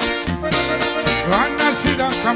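Live norteño band playing an instrumental passage on accordion, electric bass and electric guitar, with a steady beat.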